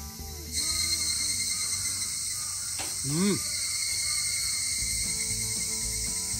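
A steady, high-pitched chorus of summer cicadas fills the forest, coming in abruptly about half a second in. A man gives a brief "mm" near the middle.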